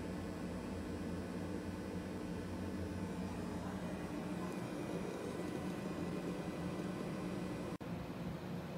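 Steady whirring hum of a running desktop computer's cooling fans, with a brief dropout near the end.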